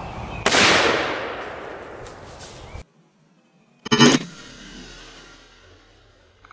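Shotgun firing a slug: one loud shot about half a second in that echoes and fades over two seconds, cut off suddenly. A second short, loud bang comes about four seconds in.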